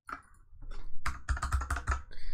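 Typing on a computer keyboard: a quick run of keystrokes entering a short number, sparse at first and faster from about a second in.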